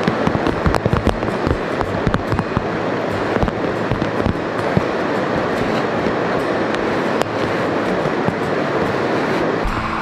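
Steady rushing of wind and river water, with frequent irregular crackles and pops as tent nylon is bundled up.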